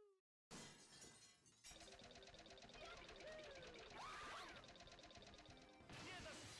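A glass-shattering sound effect crashes in suddenly about half a second in and rings out for about a second. A busy, steady soundtrack follows, with a sliding pitch near the middle.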